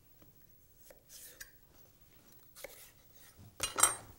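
Chef's knife cutting celery on a wooden cutting board: a few soft, spaced knocks of the blade, then a louder quick cluster of knocks near the end.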